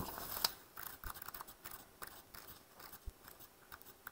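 Pages of a thick paperback code book being flipped by hand: a quick run of papery rustles and snaps in the first half-second, then scattered single page flicks.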